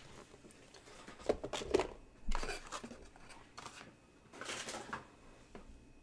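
Cards and plastic card holders being handled on a table: scattered small clicks, taps and brief rustles as cards are slid into thick top loaders.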